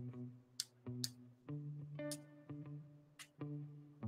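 Quiet background guitar music playing a few slow, held notes, with a few faint light ticks as the paintbrush is tapped to flick ink splatter.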